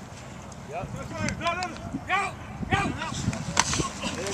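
Short shouted calls at a football line of scrimmage, a quarterback's pre-snap cadence, repeated every half second or so. A sharp clack comes near the end as the play starts.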